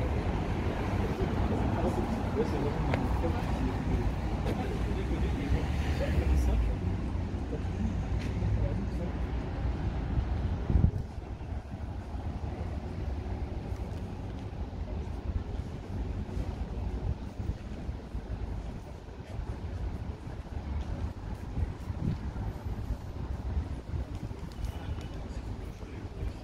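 Outdoor background noise while walking: a heavy low rumble for about the first eleven seconds, ending at a sharp knock, then a quieter steady background with indistinct voices.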